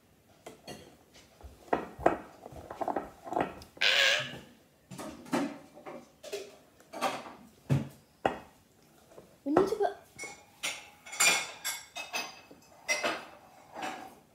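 A spoon stirring thick brownie batter in a glass mixing bowl, scraping and knocking against the glass in irregular strokes about once or twice a second.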